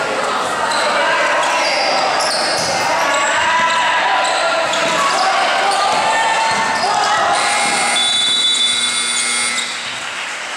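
Basketball game sounds on an indoor court: the ball bouncing on the floor, sneakers squeaking, and players and spectators shouting.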